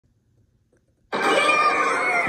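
Near silence, then about a second in a television's cartoon soundtrack starts abruptly as playback resumes: a loud, dense mix of sound effects and score with gliding tones.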